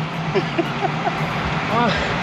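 Steady rush of wind and road noise from riding a road bike, with short snatches of a man's voice and a voice rising into a laugh near the end.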